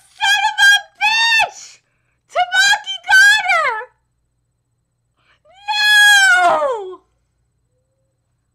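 A woman's wordless, high-pitched whimpering wails: several short cries in the first four seconds, then one longer wail about six seconds in that slides down in pitch.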